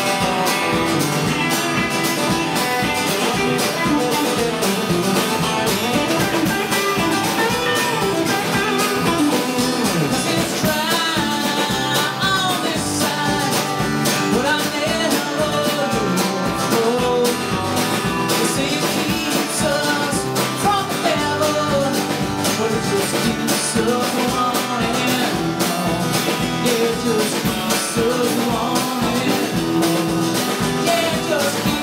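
A live band playing a bluesy rock song: acoustic guitar strumming, electric guitar, bass and drums keeping a steady beat.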